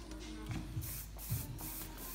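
Aerosol can of Fatboy Flexible Hairspray sprayed onto hair in a few short hissing bursts, starting about halfway through.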